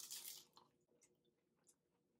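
A bite into a fried crab rangoon: a short crackly crunch at the start, then a few faint chewing clicks.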